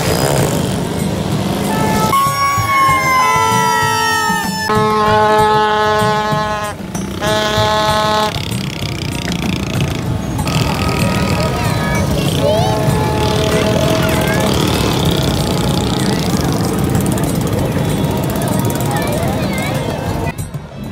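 Street crowd and traffic noise, with several loud horn blasts. A long falling tone comes about two seconds in, then two held blares follow, and fainter horns sound later.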